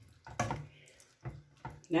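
A wooden spoon stirring thick, creamy beef stroganoff in a saucepan, making a few short wet stirring sounds.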